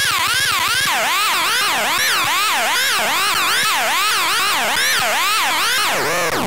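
Circuit-bent VTech Little Smart Tiny Touch Phone making a siren-like electronic tone that sweeps up and down in pitch over and over. About a second in, a low buzz drops out and the sweeps slow to roughly two a second as the knobs are turned.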